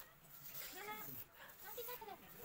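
Faint animal calls in the background: two short pitched cries that bend in pitch, about a second apart.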